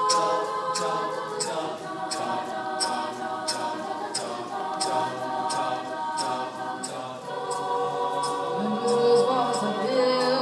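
An a cappella vocal group singing held choral harmonies, with a soft percussive tick keeping a steady beat about every 0.7 seconds. A lower solo voice comes in over the chords near the end.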